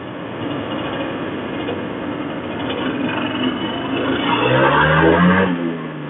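Honda NSR 150 RR's single-cylinder two-stroke engine running under way with wind noise; from about four seconds in the revs climb, then fall away near the end.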